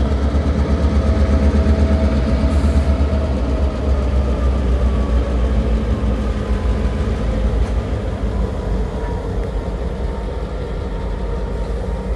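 Two Massachusetts Central diesel-electric locomotives passing at low speed, their engines running with a steady low drone that eases off a little in the second half as they move away.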